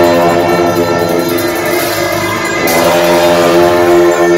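Buddhist ritual music: a steady drone of several sustained tones with large hand cymbals sounding, their bright wash swelling a little past halfway.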